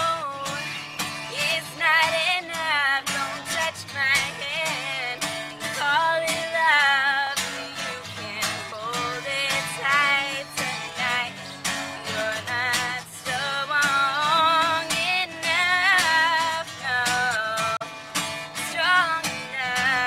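A woman singing with an acoustic guitar strummed along, her long held notes wavering with vibrato.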